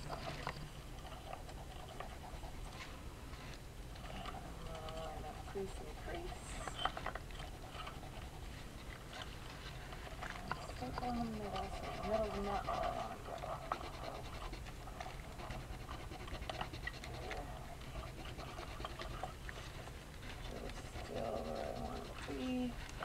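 Colored pencil scratching on watercolor paper in short shading strokes, with a few soft gliding vocal sounds, the longest about halfway through.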